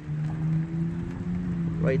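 Light rain falling, over a steady low hum with a fainter tone above it and rumbling noise from wind on the microphone.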